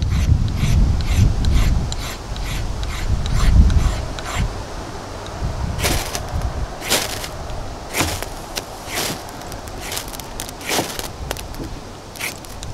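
Small metal sharpener scraping a six-inch ferrocerium rod: quick short scrapes wearing off the rod's protective coating, over a low rumble, then from about halfway in, sharper strikes about once a second that throw sparks.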